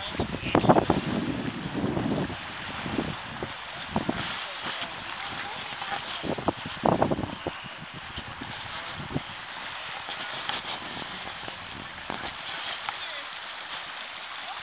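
Steady rush of river current, with wind gusting on the microphone a few times.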